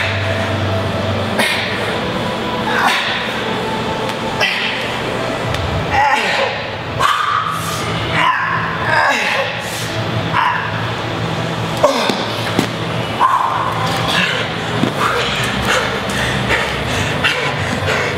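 A man's short, forceful grunts and exhalations, one roughly every second and a half, as he pumps out fast push-ups on a steel keg, over a steady low hum.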